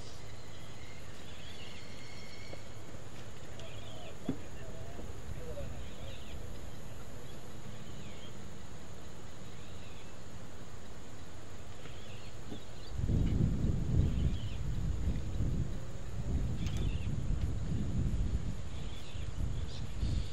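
Outdoor golf-course ambience with faint, scattered bird chirps and a faint, steady high insect drone. About two-thirds of the way through, irregular low rumbling buffets the microphone, typical of wind gusts.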